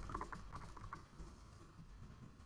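Faint typing on a computer keyboard: a quick run of keystrokes in about the first second, then a few scattered taps.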